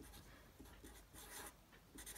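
Faint scratchy strokes of a Sharpie felt-tip marker drawing on the diagram.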